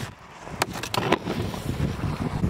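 Snowboard hitting and scraping across packed snow: a few sharp knocks about half a second to a second in, then a rough, low sliding rush.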